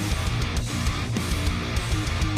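Metalcore band music: distorted electric guitars over bass and drums, steady and loud, with no vocals in this short gap between sung lines.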